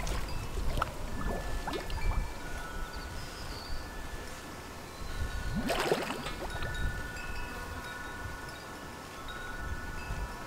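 Chimes ringing, several long tones at different pitches overlapping, over water sloshing in a swimming pool, with a louder splash about six seconds in.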